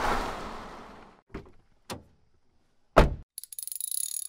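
End-card sound effects: a whoosh that fades out over the first second, then three knocks, the heaviest a thunk about three seconds in, followed by a fast high rattle of ticks near the end.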